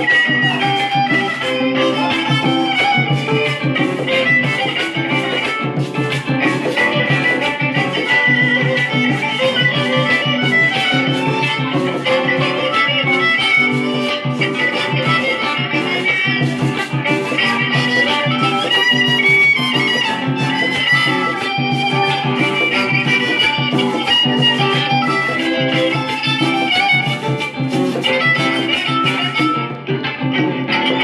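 Panamanian folk violin playing a melody, with acoustic guitar and hand drums keeping a steady, busy beat underneath.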